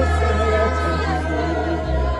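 A choir singing a slow hymn in long held notes over a sustained low bass line, the bass shifting to a new note near the end.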